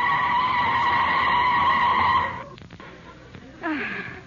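Radio sound effect of car brakes screeching: one long, steady high squeal as the car brakes to a stop at a red light, cutting off about two seconds in. A couple of faint clicks follow, and a brief falling sound comes near the end.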